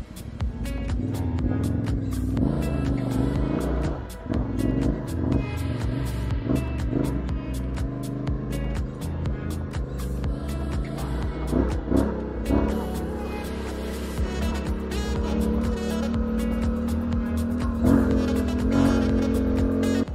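Yamaha Ténéré 700's parallel-twin engine running while riding, its pitch rising and falling a few times with the throttle, with background music playing over it.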